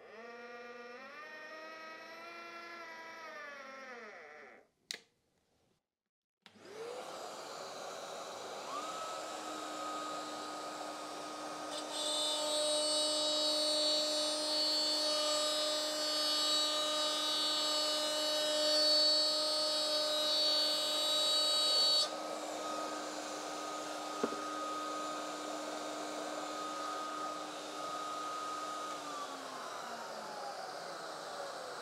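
Router table with a vacuum dust extractor: about six seconds in the machines start and the router spins up with a rising whine. The router runs steadily, is louder with a higher whine for about ten seconds while it cuts the edge of a black MDF panel, and winds down with a falling pitch near the end.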